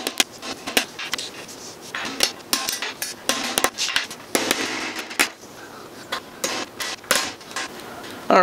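Small hammer tapping a steel roll pin into the drilled hole of a stainless steel threaded rod: a string of irregular, sharp metallic taps, a few to a second, thinning out a little past the middle.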